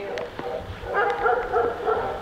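A dog making a broken run of short, high-pitched yelps in the second half, over a low outdoor rumble.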